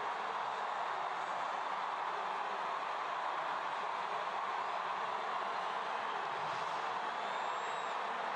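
Steady murmur of a large stadium crowd, without cheering or announcements.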